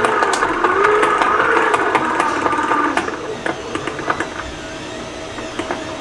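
Hand-crank generator whirring as it is turned, with fast small ticks from its gearing and a tone that wavers with the crank speed; about three seconds in it slows and fades as the cranking stops.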